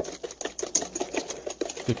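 Wire whisk beating melted butter and sugar in a stainless steel bowl, its wires clicking rapidly and evenly against the metal, about seven strokes a second.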